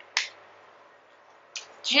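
A single sharp click just after the start, the lid of a compact highlighter palette snapping open.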